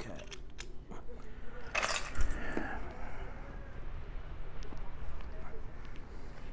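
Plastic building bricks and plates being dropped into a stainless steel bowl and handled among bagged parts: scattered clicks, a sharp clatter with a low thump just before two seconds in, then steady small clicking and rustling.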